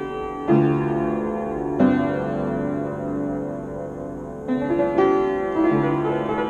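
Baldwin piano played in a slow, loose improvisation. Chords and notes are struck about half a second in, near two seconds, and several more from four and a half seconds on, each left to ring and fade between strikes.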